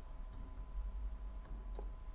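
A few faint, separate clicks of computer keyboard keys: the Enter key tapped to add new lines, over a low steady hum.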